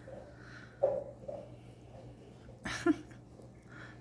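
A quiet room with a low steady hum and a few soft breathy sounds: one about a second in and a sharper one near three seconds.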